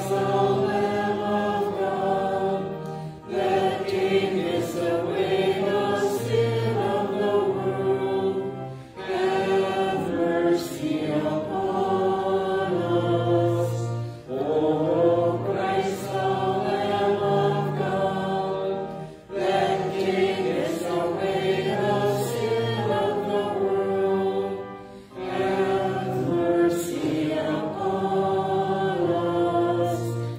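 Church congregation singing a slow hymn of the communion liturgy, in phrases of about five seconds with short breaths between them.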